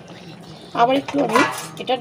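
Metal cookware clattering, a pan lid being handled to cover the pan, about a second in, mixed with a voice.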